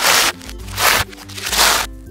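Sealed plastic bags of LEGO bricks crinkling and rattling, in three short bursts as they are set down on a table, over steady background music.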